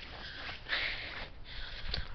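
A person breathing out hard close to the microphone, a breathy hiss about a second long partway through, then fainter breath near the end.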